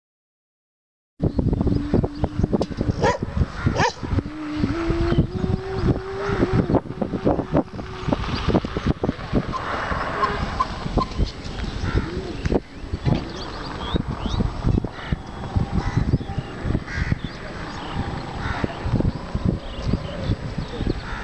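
House crows cawing over a busy outdoor background of many short clicks and knocks, with a held low tone for the first several seconds. The sound starts abruptly about a second in.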